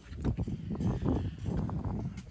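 Footsteps on a paved driveway mixed with rustling and bumps from a handheld phone microphone, an uneven run of small knocks over a low rumble.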